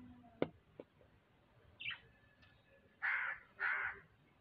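A crow cawing twice, two harsh calls about half a second apart near the end, after a couple of short clicks.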